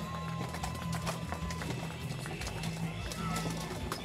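Music playing under the clatter of a medieval-combat melee: many sharp knocks of weapons striking armour and shields, with voices in the background.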